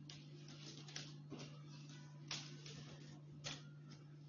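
Faint handling noises as a cloth tape measure and fabric are moved on a wooden table: a few soft ticks spread over the seconds, over a steady low hum.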